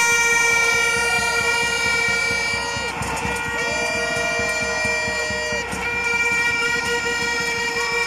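Horns blaring in long continuous blasts over a protesting crowd, the blare dropping out briefly about three seconds in and again near six seconds.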